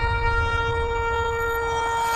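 A long horn blast, a single steady note with rich overtones held without a break, over a low rumble: the sounding of a trumpet-like horn such as a shofar.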